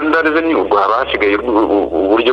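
A person speaking steadily, with no other sound standing out.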